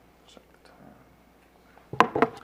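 Quiet room tone with a few faint ticks and soft breathy sounds. A sharp, louder sound starts right at the end.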